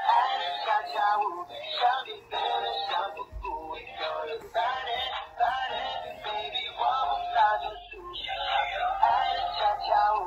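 Dancing cactus plush toy singing a song through its speaker, in short phrases.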